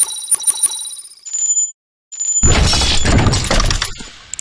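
Intro sound effects: a quick run of bright, ringing chime-like strikes and a short high tone, then after a brief gap a loud crash-like burst lasting about a second and a half.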